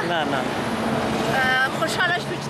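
Voices of an outdoor group over a steady low hum of road traffic, with a short spoken phrase about one and a half seconds in.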